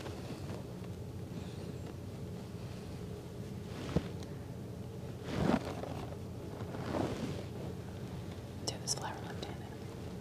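Quiet room tone with a steady faint hum, a few soft whispered voice sounds, and a single small click about four seconds in.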